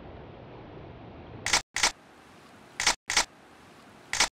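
Camera shutter clicking in pairs: two sharp double clicks, the first about a second and a half in and the second about a second later. A steady hiss runs before the first click and stops when it comes.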